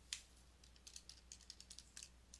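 Faint, light clicks of calculator keys being pressed: one sharper click at the start, then a quick irregular run of key presses from under a second in, as the product of 20, π and 0.25 squared is keyed in.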